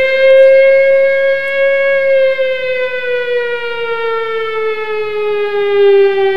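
Siren sound played by the PicoScope software's mask alarm: one long wail that rises slightly over the first two seconds, then slowly falls in pitch. It is the alert that the captured waveform has entered the mask, a failure event.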